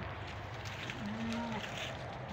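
A goat bleats once, a short, low, steady call about a second in, over the faint crackle of goats browsing dry twigs and leaves.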